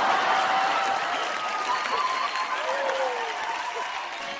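Studio audience applauding, with a few voices calling out over the clapping; the applause eases off slightly toward the end.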